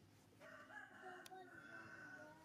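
A rooster crowing once: a faint, drawn-out call that starts about half a second in.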